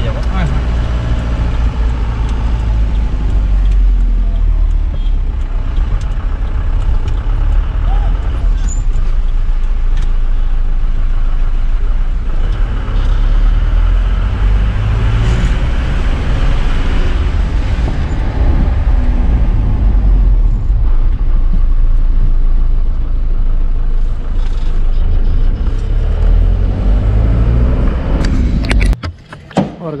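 Engine and road noise inside the cabin of a moving taxi van: a loud, steady low rumble that carries on throughout and cuts off abruptly about a second before the end.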